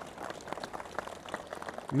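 Scattered applause from a small group of people, a loose run of individual hand claps.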